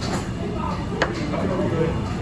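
Restaurant background of indistinct voices and low steady noise, with a single sharp tap of tableware on the table about a second in.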